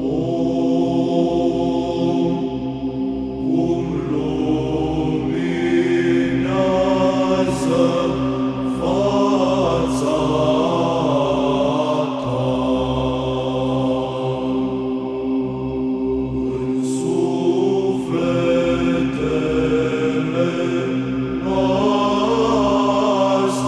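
Orthodox psaltic (Byzantine) chant in the fifth mode, sung in Romanian: a vocal melody moves in steps over a steady held drone note (the ison), with the sung words' consonants hissing now and then.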